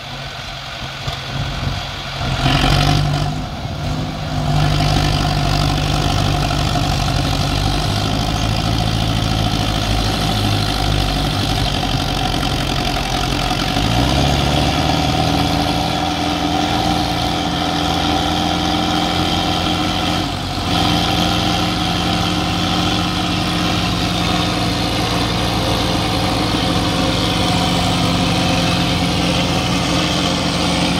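Diesel engines of three tractors, a Sonalika DI 750, a Mahindra 585 XP Plus and a Swaraj 744 XT, running together under load as their rear tyres spin and dig into sand. There is a louder rev about three seconds in, and the engine note steps up about fourteen seconds in and then holds steady.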